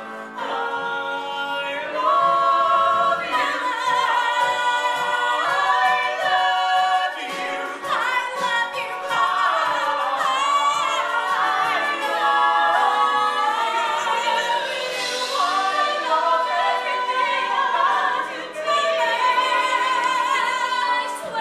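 Music with voices singing, several together like a choir.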